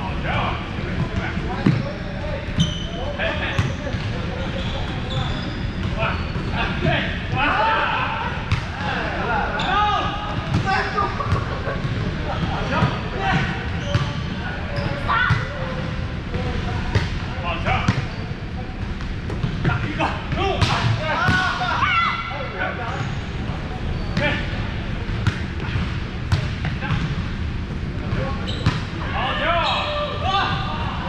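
Indoor volleyball play in a large, echoing gym: repeated sharp smacks of hands hitting the ball and the ball bouncing on the hardwood floor, with players' indistinct calls and chatter. A steady low hum of the hall runs underneath.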